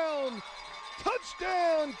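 Speech only: a sports announcer's excited play-by-play call, two long drawn-out shouts that fall in pitch.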